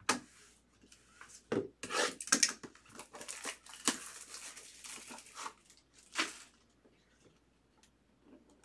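A plastic wrapper being torn open and crinkled by hand, in a quick run of short rustles and rips that stops about six seconds in.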